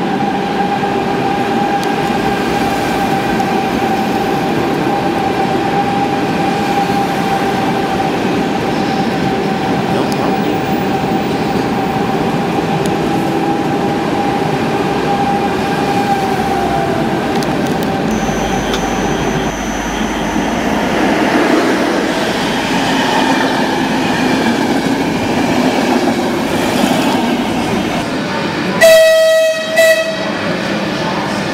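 A Pendolino electric train running into a station at low speed: a steady electric whine over rolling rumble, the whine dropping in pitch about two-thirds of the way through, then rail and wheel noise. Near the end, a loud, short train horn sounds twice.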